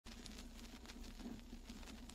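Faint vinyl record surface noise from the lead-in groove: scattered crackles and clicks over a low steady hum, before the music begins.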